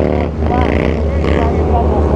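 Motorcycle engines idling steadily, with a man's voice talking over them.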